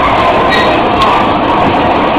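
Bumper cars running on the rink floor, a loud, steady rolling noise heard from inside one of the moving cars.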